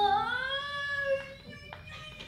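A performer's long, drawn-out, cat-like vocal call, a mock meow lasting about a second and gliding in pitch. It is heard over the fading end of a held piano note.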